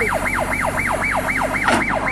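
Electronic siren in a fast yelp, its pitch sweeping down again and again about four times a second, over a steady low hum.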